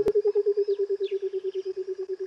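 A wild animal's rapid, even trill of low pulses, about fourteen a second, falling slightly in pitch, with a few faint high bird chirps above it. A sharp click sounds at the very start.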